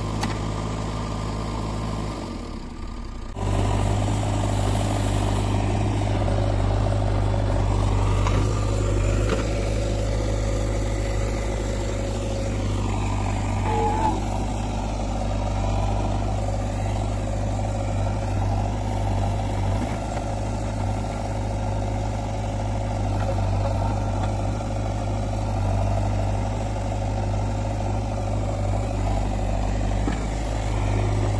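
JCB 3DX Eco backhoe loader's diesel engine running steadily under working load while the backhoe arm digs. The sound dips briefly about three seconds in, then comes back louder and holds steady.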